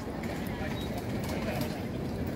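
Open-air market ambience on a city square: a steady low rumble with distant voices from the stalls and a few faint clicks.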